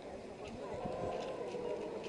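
Footsteps of a crowd walking slowly on asphalt in procession, shuffling and clopping, over a steady murmur of many voices.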